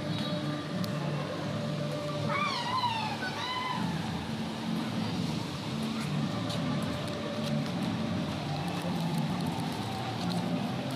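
Busy outdoor event ambience: a steady background of indistinct voices and faint music, with a short wavering high-pitched call a little over two seconds in.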